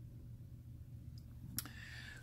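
Quiet room tone with a steady low hum, broken by a single short click about one and a half seconds in.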